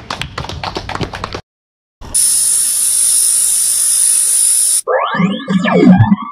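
Scattered hand clapping from a crowd that cuts off abruptly about a second and a half in. After a brief gap comes the channel's outro sound effects: a steady, loud hiss lasting about three seconds, then a quick run of sliding pitched cartoon-style boings near the end.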